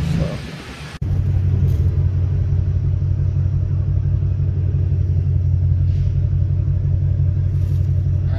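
Car engine and exhaust giving a steady low rumble, heard from inside the cabin while rolling slowly in city traffic. It starts abruptly about a second in, after a short fading sound.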